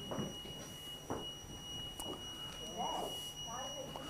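Quiet room sound with a steady high-pitched whine, a single pure tone that runs on without a break, and a faint voice murmuring briefly in the second half.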